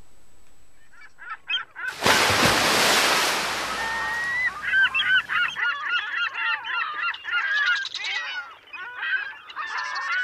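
A loud rushing whoosh of noise lasting about three seconds, then a flock of birds honking and squawking in many overlapping calls to the end.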